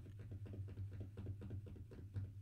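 Pause between speech: a steady low electrical hum under faint ticking room noise, with one brief click at the start.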